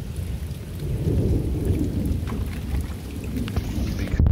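Rain falling on a wet yard and fence, with scattered drips and a low, uneven rumble that swells about a second in.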